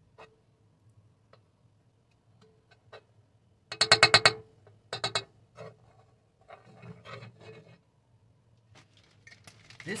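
Metal spoon scraping against a cast iron skillet as lumps of solid white cooking fat are knocked off into it. There is a loud rasping scrape about four seconds in, a shorter one a second later, and softer scrapes around seven seconds, with small clicks between them.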